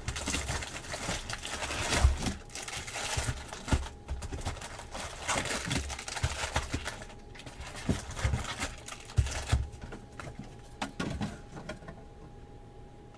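Cardboard trading-card box being opened and handled by hand: the flaps rustling and scraping irregularly, with scattered light knocks.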